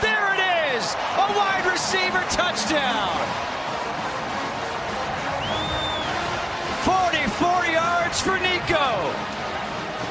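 Football stadium crowd cheering after a touchdown, a steady wash of crowd noise with raised voices and shouts over it in two spells, at the start and again about seven seconds in, and a few sharp claps.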